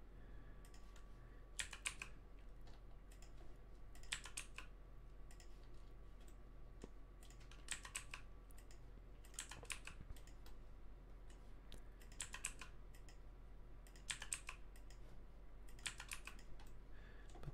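Faint computer keyboard keystrokes in short bursts of a few clicks every two to three seconds, as shortcut keys are pressed while editing a 3D mesh.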